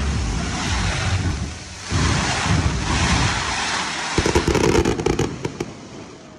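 Fireworks display going off in rapid succession: a dense run of booms and hissing bursts. About four seconds in, a spell of sharp crackles, then the sound fades.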